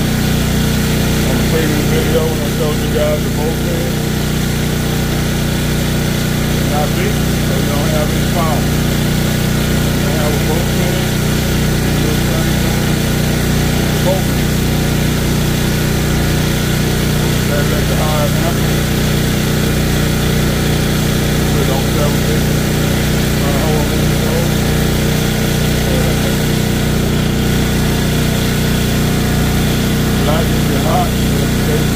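Westinghouse 14,500-watt portable generator engine running at a steady constant speed, a continuous low drone with no change in pitch.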